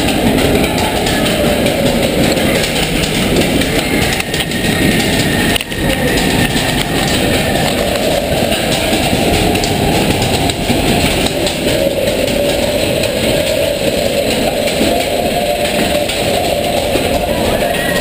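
Matterhorn Bobsleds roller-coaster car running along its track, a loud, steady rumble and clatter of wheels and track.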